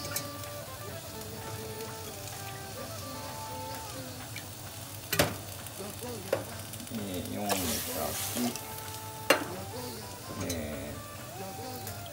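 Water poured in stages into an earthenware pot of hot broth, over a steady sizzle from water spilled onto the hot stove. Two sharp knocks, about five and nine seconds in.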